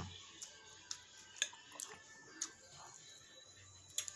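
Quiet eating sounds: a few scattered short clicks and taps of chewing and cutlery on a plate, with faint music underneath.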